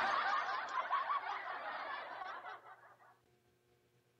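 Laughter, dense and busy, fading away about three seconds in.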